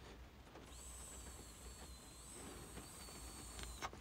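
A long, faint draw on a disposable THCA vape, about three seconds, with a thin, slightly wavering high whistle from the device's airflow over a soft hiss.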